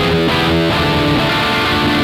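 Raw black metal: loud, distorted electric guitar chords over bass guitar, changing every fraction of a second without a break.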